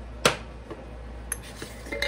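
Kitchen clatter: one sharp knock of a hard object set down on the counter about a quarter second in, then a few lighter clicks.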